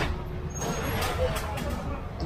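Dump truck running with a low rumble, and a short hiss typical of air brakes releasing about half a second in, amid crowd voices.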